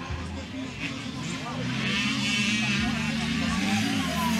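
Motocross bike engine revving and wavering in pitch, getting louder from a little under halfway through.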